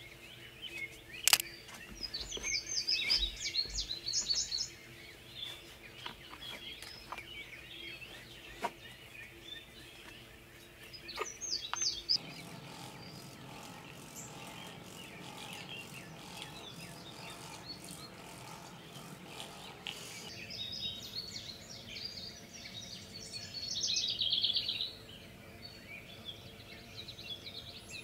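Birds chirping in scattered bursts of song, busiest a few seconds in and again about three-quarters of the way through, over a faint steady low hum.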